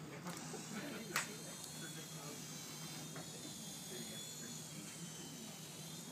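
High, slightly wavering whine of the small electric motor of a remote-control flying toy, with a single sharp click about a second in.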